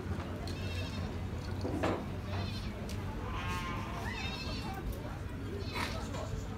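Beni Guil sheep bleating, several wavering bleats from different animals over a steady low hum.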